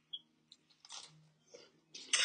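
Faint crunching of someone biting into and chewing a large cheese cracker: a few short, soft crunches, about one early on and one about a second in, against near silence.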